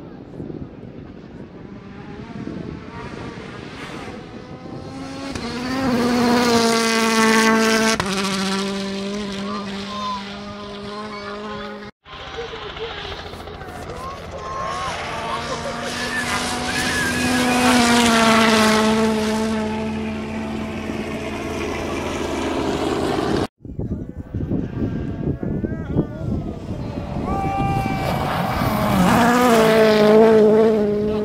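Turbocharged four-cylinder World Rally Car engines at high revs as cars approach and pass on a gravel stage. Each engine note swells as the car nears, steps in pitch at gear changes and climbs again under acceleration. The sound cuts out sharply twice, about 12 and 23 seconds in.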